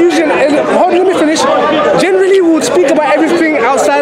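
Only speech: men arguing, their voices overlapping.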